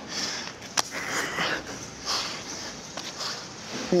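Players breathing hard after a handball rally, with a steady outdoor hiss, and one sharp slap about a second in.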